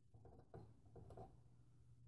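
Near silence: a few faint clicks and scrapes of needle-nose pliers working a mounting-plate pin out of a motherboard, over a low steady hum.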